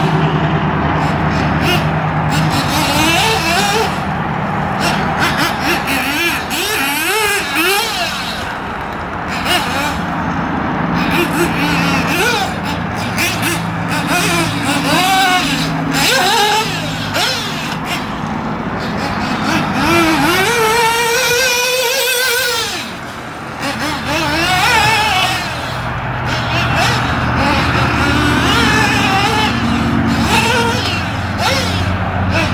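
Kyosho MP10 1/8-scale nitro buggy's engine revving up and easing off again and again as it laps a dirt track, its pitch rising and falling every second or two, over a steady low hum.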